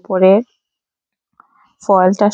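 Speech only: a voice talking, stopping for about a second of silence, then talking again near the end.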